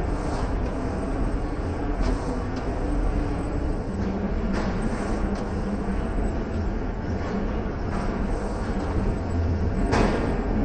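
Steady rumbling background noise of a large gym, with a few faint knocks scattered through it.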